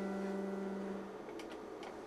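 Held notes on an electronic keyboard, G with the F-sharp a major seventh above, fading out over about the first second. A few faint clicks follow near the end.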